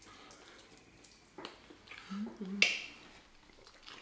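Close-miked eating: a couple of sharp wet mouth smacks while chewing, the louder one about two and a half seconds in, with a short closed-mouth hum of 'mm-mm' just before it.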